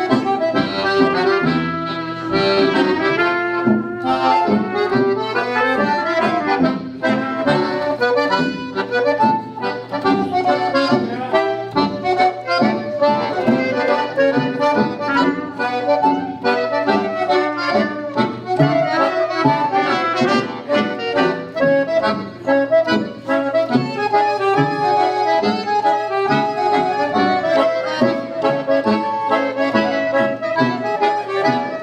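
Chemnitzer concertina playing a tune with chords, with a tuba playing the bass notes underneath.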